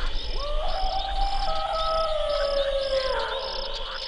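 Crickets chirping in short high pulses about twice a second, under slow, sustained, gliding tones of background music.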